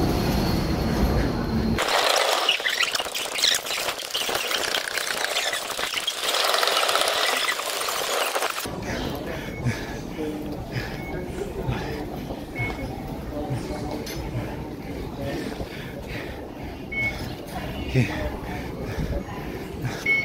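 Low rumble of an MRT train for the first two seconds, then busy station noise: a hiss with indistinct voices, and later footsteps and general platform bustle as passengers walk off the train.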